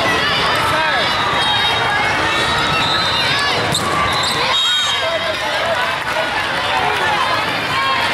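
A volleyball rally on an indoor hardwood court: the ball is struck through a set and an attack at the net, with sneakers squeaking. Players' and spectators' voices and the chatter of a crowded hall of neighbouring matches run throughout.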